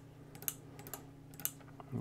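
Two sharp clicks about a second apart, with a few fainter ticks, as relay 4 on a Raspberry Pi relay board is switched from the control page. A low steady hum runs underneath.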